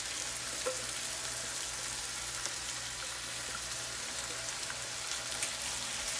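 Diced chicken breast sizzling steadily in a frying pan over high heat as a thick blended avocado cream sauce is scraped into it, with a few faint ticks from a silicone spatula.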